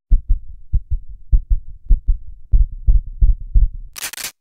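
Heartbeat sound effect: deep paired thumps, lub-dub, quickening over the last second and a half.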